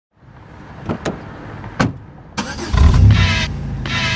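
Car sound effect opening a hip hop track: a few sharp clicks in the first two seconds, then about two and a half seconds in a car engine comes in loud and revs with a deep rumble.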